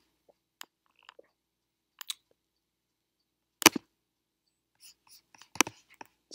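Computer mouse clicks: a handful of separate sharp clicks spread out, the loudest a little past halfway, with near silence between them.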